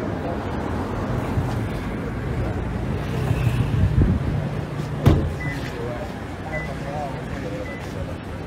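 Steady low hum of an idling SUV engine, with a car door shutting sharply about five seconds in.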